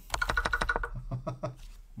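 Rapid keystrokes on a computer keyboard: a quick, dense run of key clicks that thins out to a few scattered clicks toward the end.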